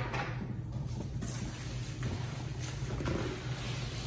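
A large cardboard box being handled and shifted: rustling and scraping of the cardboard and its packing, with a few light knocks, over a steady low hum.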